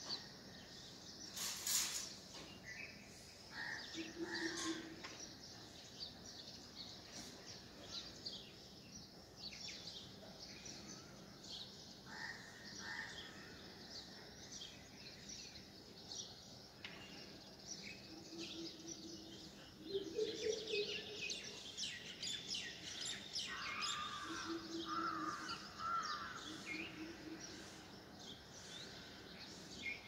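Morning birdsong, many small birds chirping with crows cawing, and through it an unfamiliar animal call repeated several times as short, low hoots, each under a second long.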